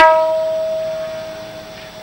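Kirtan accompaniment at a pause: a last tabla stroke, then a single held harmonium note that fades away over about two seconds.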